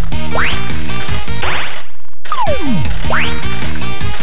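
CR Osomatsu-kun pachinko machine's digital-reel sound effects: quick rising and falling whistle-like glides over short, jingly electronic tones. The pattern repeats every few seconds as the reels spin again.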